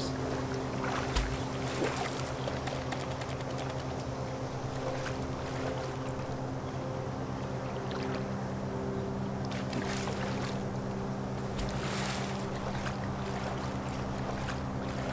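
Soft, sustained background music, held chord-like tones that shift slowly, with a few brief splashes of water as black bears wade and wrestle in a shallow pond.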